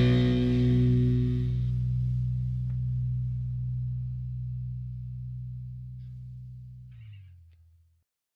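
The final distorted electric guitar chord of a hardcore punk song, held and ringing out after the drums stop, slowly fading until it is cut off about seven seconds in.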